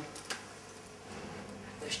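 A quiet pause: faint background noise with one light click about a third of a second in, as a small preamp unit is handled and picked up off the floor. A man's voice starts again near the end.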